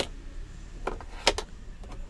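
Plastic clicks and taps from the dashboard ashtray lid of a 2008 Dodge Ram 2500 being worked by hand: a sharp click at the start, then a few lighter clicks, one of them doubled, through the rest.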